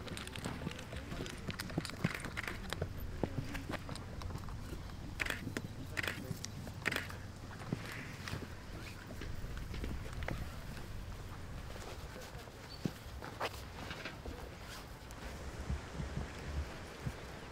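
Outdoor field ambience: faint distant voices and short calls, with scattered light knocks and running footsteps.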